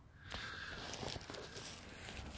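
Footsteps through dry leaves and wood-chip mulch, a continual rustle that starts about a third of a second in.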